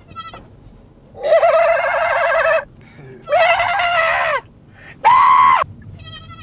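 Young goat kid bleating three times inside a car: loud, quavering calls, each shorter than the last.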